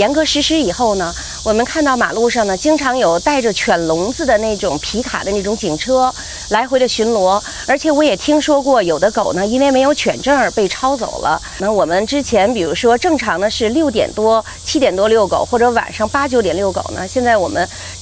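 A woman speaking Chinese in an interview, with a steady hiss underneath.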